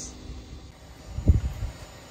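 Low rumble of wind and handling noise on a phone's microphone, with one brief low thump a little past halfway, as the camera is turned around.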